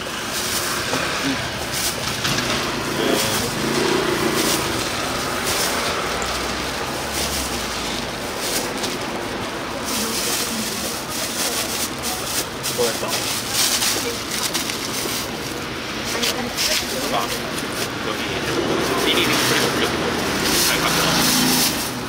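Plastic bags rustling and crinkling as food is scooped into a clear bag and the bags are handled, with short crackles throughout. Under it runs a steady street background of traffic hum and occasional voices.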